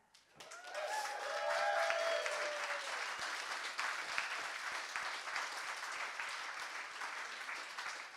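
Audience applauding. It starts about half a second in and slowly fades, with a brief cheer in the first seconds.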